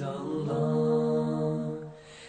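Nasheed singing: one long note held steady as a chant, swelling about half a second in and fading near the end.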